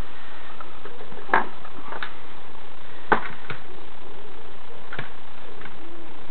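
About five sharp little clicks, spaced irregularly, as the stiff sleeve of a small nitro glow engine is worked up out of its cylinder by hand, over a steady hiss.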